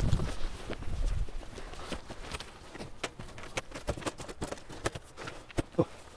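Irregular clicks and knocks of folding camping chairs and a folding metal-framed table being opened out and set up, after a low rumble in the first second.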